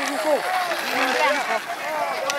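Several men shouting at once, their voices overlapping, urging on racing sighthounds.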